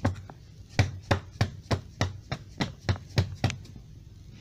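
A quick run of about a dozen sharp knocks on a wooden tabletop, roughly three a second and unevenly spaced, like something being tapped or bumped against the desk.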